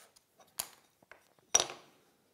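Short, sharp clicks of a red anodized aluminium square being handled and set against the edge of an MDF board for marking. There are two main clicks with a fainter tick between them, and the loudest, with a brief metallic ring, comes about a second and a half in.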